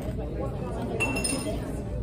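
Tableware clinks once about a second in, with a short high ring, over the background chatter of diners in a restaurant.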